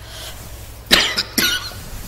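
A woman coughing twice, two short sharp coughs about half a second apart.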